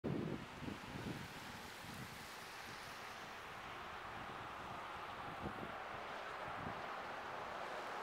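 Steady outdoor street hiss of wind and traffic on a wet, slushy road, with a few soft low thumps near the start.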